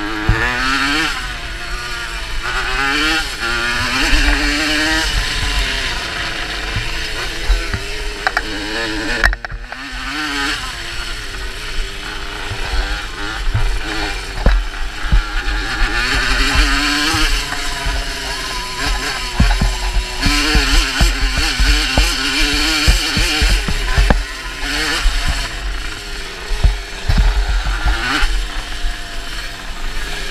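Two-stroke moped engine revving up and down as it is ridden hard, heard on board, with rattles and knocks over the bumps. The engine note briefly drops away about nine seconds in.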